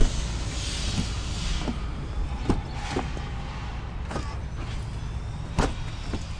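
Clicks and knocks from a 2000 Jeep Grand Cherokee's doors being handled: a sharp click at the start and another about five and a half seconds in, with lighter taps between, over a steady low background rumble.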